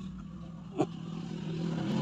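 Low steady hum of a motor vehicle's engine, growing louder through the second half, with one brief short sound under a second in.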